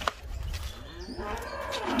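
A sharp click, then one long, faint animal call that rises and falls in pitch.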